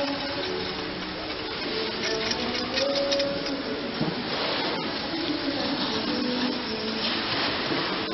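Steady rushing hiss of a snowboard sliding over the snow of an indoor slope.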